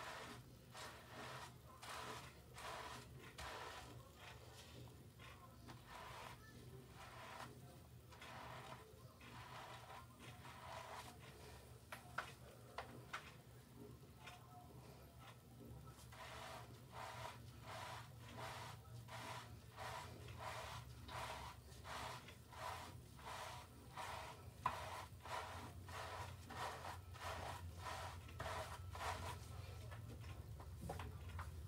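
Faint, rhythmic wet rubbing of fingers scrubbing a foamy lather into short hair and scalp, about one to two strokes a second, over a low steady hum.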